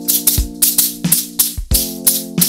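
Juggling shakers shaken and grabbed in rhythm, sharp rattling strokes about three a second. A backing track with sustained keyboard chords and a low beat plays underneath.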